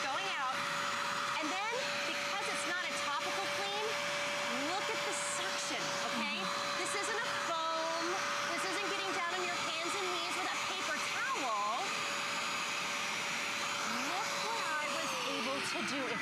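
Bissell Spot Clean Pro portable carpet deep cleaner running, a steady motor whine with the hiss of suction as its hand tool sprays and pulls water out of the carpet. Near the end the motor is switched off and the whine falls away as it spins down.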